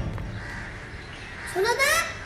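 A child calling out loudly upward, one rising call near the end after a quiet stretch.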